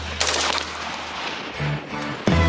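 A gunshot: a sharp crack about a quarter second in, right after another just before it, echoing away over about a second as the music drops out.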